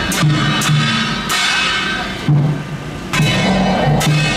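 A temple road-opening drum troupe playing: a large barrel drum on a wheeled cart is beaten while brass hand cymbals clash and ring on. The clashes come about every half second, with a brief lull a little past two seconds in before they resume.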